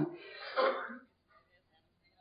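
A woman clearing her throat once, briefly.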